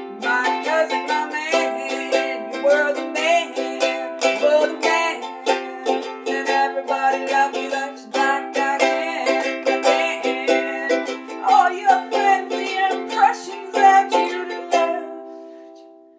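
Ukulele strummed in a steady rhythm of chords; the strumming stops about a second before the end and the last chord rings out and fades.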